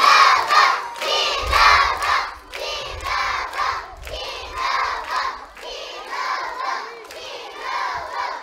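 A large group of young children shouting together in unison, in repeated rhythmic bursts like a chant or cheer.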